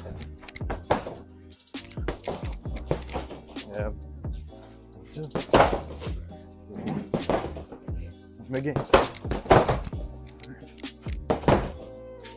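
Boxing gloves striking a freestanding vinyl heavy bag, an irregular run of punch impacts, with background music underneath.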